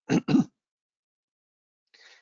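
A man clearing his throat, two short loud bursts in quick succession.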